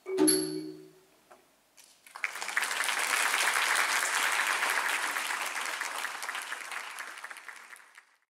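A last struck note on the ranat ek, the Thai wooden xylophone, rings out and dies away at the close of the piece. After a short pause, applause starts about two seconds in and slowly fades.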